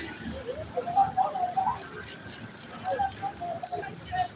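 Indistinct voices of people talking, with a steady high-pitched whine running underneath.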